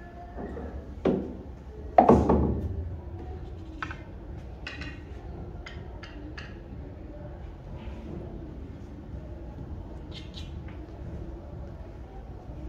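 Billiard balls knocking on the table while the balls are set up for the next shot: a lighter knock about a second in, a heavy thud with a short ringing decay about two seconds in, then a series of light clicks.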